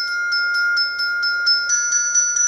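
Glockenspiel played alone with mallets: a quick, even run of notes at about five strikes a second, the steel bars ringing on over one another. A higher note comes in near the end.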